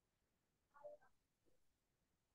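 Near silence over a video call, with a faint, brief voice-like sound about a second in.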